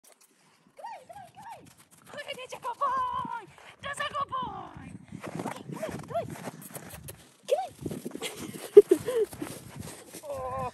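Footsteps crunching on packed snow, running and stopping, with a woman's high-pitched wordless calls and cooing over them; one sharp louder crunch near the end.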